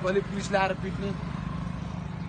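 A man's voice briefly, then a steady low hum of street traffic.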